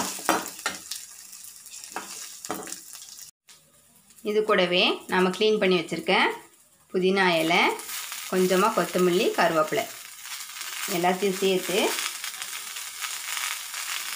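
Metal spatula stirring and scraping in an aluminium kadai, with light clicks and a faint sizzle, as coconut, lentils and green chilli and then mint and coriander leaves are sautéed. From about four seconds in, a woman's voice speaks over the frying in several short stretches, louder than the stirring.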